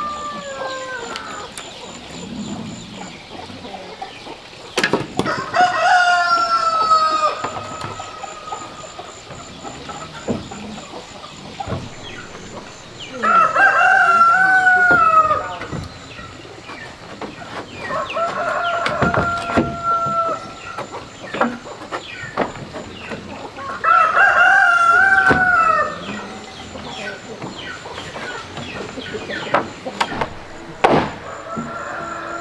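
A rooster crowing again and again: one call ending right at the start, then four more of about two seconds each, spaced five to six seconds apart. A few sharp knocks sound between the crows.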